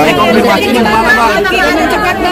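Several people talking at once, their voices overlapping so that no words come through clearly.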